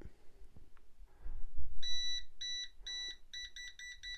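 GVDA GD156 gas detector alarm beeping as it detects paint-spray fumes. A low rumble comes first, then about two seconds in the high-pitched beeps start about half a second apart and quicken into rapid beeping.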